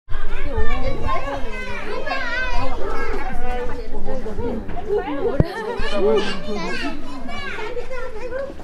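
Many children's voices chattering and calling out at once, high-pitched and overlapping, with no single voice standing out.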